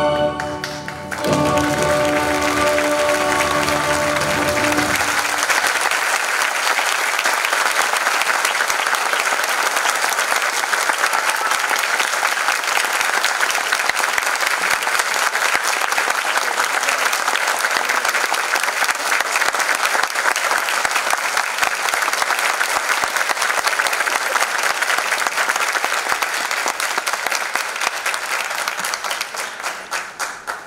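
Audience applauding, starting over the final held chord of orchestral music that ends about five seconds in; the clapping then goes on steadily and dies away near the end.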